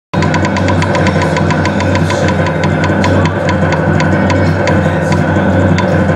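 Gold Fish video slot machine playing its electronic sound effects: a rapid, even run of ticks, about four a second, over a steady low hum and held tones.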